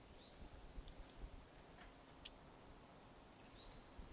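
Near silence: faint outdoor ambience with a few soft clicks and two short high chirps.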